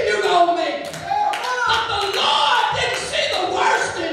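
A woman's amplified voice preaching in a raised, chanting style, with hand-clapping from the congregation.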